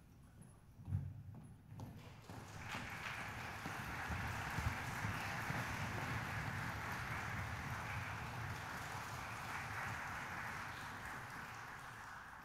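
A thump about a second in, then audience applause that starts about two seconds in, holds steady and fades near the end.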